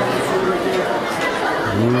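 Many diners talking at once in a busy restaurant dining room, a steady hubbub of overlapping conversation, with one voice saying "ooh" near the end.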